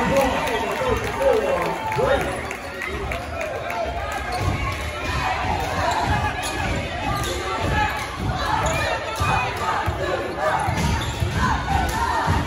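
A basketball dribbled on a hardwood gym floor in repeated thuds, with sneakers squeaking and spectators' voices carrying through a large, echoing gym.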